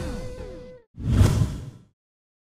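Branded outro sound effects: a swoosh with falling tones fades out over the first second. Then a second, louder whoosh with a deep hit comes about a second in and cuts off just before the end.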